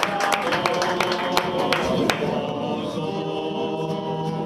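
A group of people singing together, holding a chord of voices from about two seconds in, with sharp clicks and knocks over the first half.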